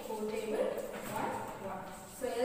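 A woman speaking, in a classroom lesson's explaining voice.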